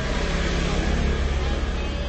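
Steady low rumble of a moving vehicle heard from inside its cabin, getting slightly louder about a second in.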